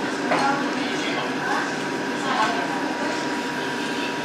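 Indistinct voices speaking in short snatches over a steady background hum, with a thin, constant high-pitched whine running under them.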